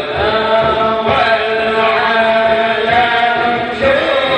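A man's voice chanting through a microphone and loudspeaker system, in long held notes that bend in pitch, with a brief break near the end.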